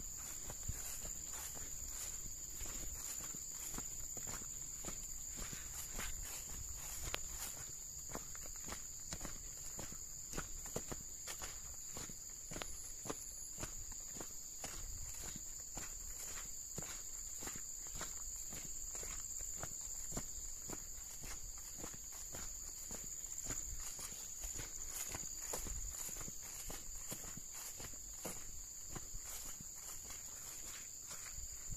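Footsteps walking at a steady pace on a grassy dirt track, over a steady high-pitched chorus of insects.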